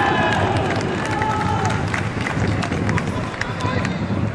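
Live sound of a football match: high-pitched shouted calls from players carry across the pitch, with a second call about a second in. Scattered sharp knocks and a low murmur from a small crowd run underneath.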